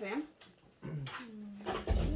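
A pause in table conversation: a moment of near quiet, then faint voices and a short held hum-like vocal sound, with a low thump near the end.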